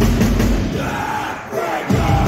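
Metalcore band playing live, dropping out about a second in to a short shouted voice over crowd noise, then the full band crashes back in near the end.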